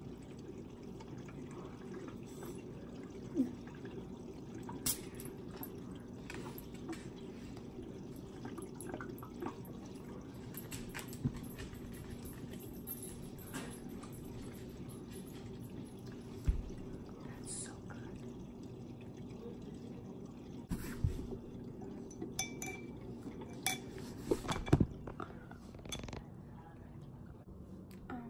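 Sips and small sloshes of kombucha in a glass bottle, drunk from the bottle and through a metal straw, with a few sharp clinks, over a steady low hum.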